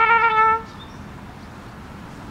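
Trumpet holding a long note with vibrato that ends about half a second in, followed by a quiet pause with only faint outdoor background noise.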